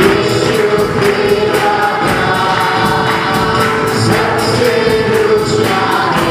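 A group of voices singing a Christian worship song in gospel style, over instruments with a steady, quick percussion beat.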